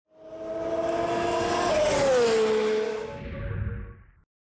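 Racing car engine used as an intro sting: a high, steady engine note that drops in pitch partway through as the car goes past, then fades out near the end.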